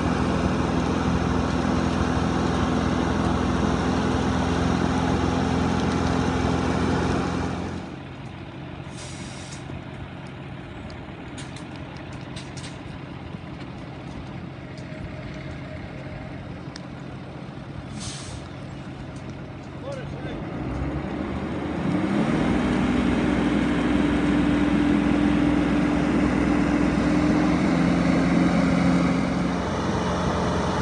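Fire tanker truck's engine running hard to drive the water pump while its roof nozzle sprays, a loud steady hum. The hum falls away for about fourteen seconds in the middle, leaving quieter sound with a few sharp clicks. It then comes back as the engine revs up, its pitch rising, and holds steady again to the end.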